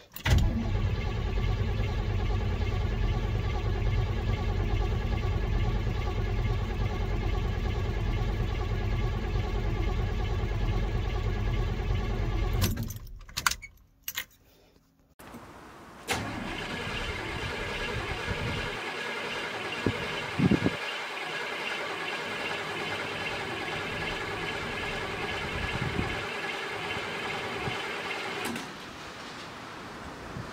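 Starter cranking the 1978 Chevy C10's 350 small-block V8 steadily for about twelve seconds without it catching, then stopping: the engine won't fire because fuel has not yet come up to the carburetor after months of sitting. After a short pause with a couple of clicks, a thinner, steady mechanical sound runs on until near the end.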